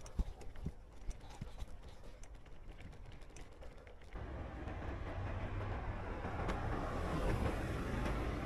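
A bicycle rolling over brick paving stones: a low rumble with scattered small clicks and rattles. About halfway through, this gives way abruptly to louder, steady road traffic noise that swells slightly as a car approaches.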